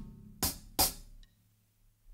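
Two short closed hi-hat strokes on a 14" Amedia Arzat hi-hat, about a third of a second apart, played slowly as the two sixteenth notes that follow a kick-and-snare hit. The ring of that hit is fading at the start.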